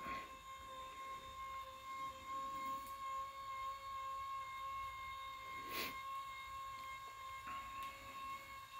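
The electric motors of a Tempur-Pedic adjustable bed base are running in ergo mode, lifting the head and foot of the mattress. They make a steady, even hum with a thin whine above it. There is a single tap about six seconds in.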